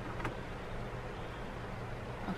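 Steady low background hum with an even hiss, and one short click about a quarter of a second in.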